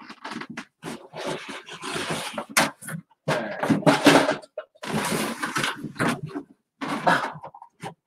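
Rustling and knocking of merchandise being handled and moved about, in irregular bursts of a second or so with short gaps between them.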